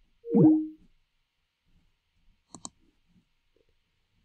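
A short falling electronic tone that steps down in pitch, the Skype call-ending sound as the call is hung up. About two and a half seconds in comes a quick double mouse click.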